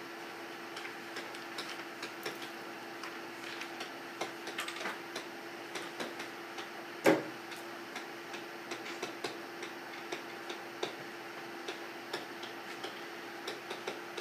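Irregular light ticks and taps of a stylus writing on a tablet screen, over a faint steady hum, with one louder knock about halfway through.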